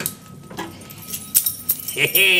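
Keys and a small metal lock clinking as they are handled: a handful of light, separate clicks and taps.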